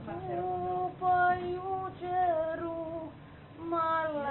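A woman singing slow, long held notes in a single voice, with a short break a little after three seconds in.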